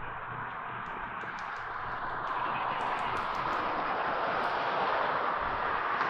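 Road traffic noise from the street, a steady hiss that slowly grows louder, with a low hum through the first half and a few faint ticks.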